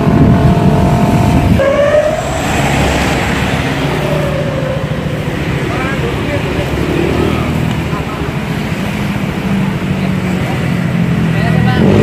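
Roadside street traffic: motorcycle and car engines running with a steady low hum, and vehicles passing.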